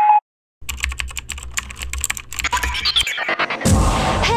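Rapid, irregular clicking, like keys being typed, over a steady low hum for about two and a half seconds. After a brief pause, music with a singing voice comes in near the end.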